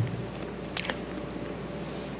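Quiet room tone with a soft thump at the start, then a single sharp click just under a second in and a fainter tick shortly after.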